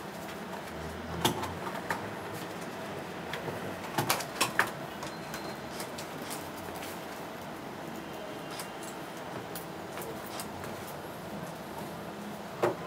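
Steady meeting-room hum with a few sharp clicks and knocks: one about a second in and a quick cluster about four seconds in.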